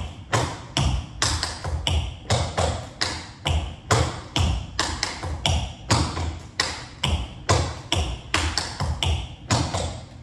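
Tap shoes striking a wooden floor as a tap combination is danced through: sharp taps, several a second, in an uneven rhythm.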